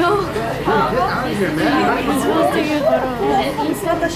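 Several people chattering at once, their talk overlapping into indistinct conversation.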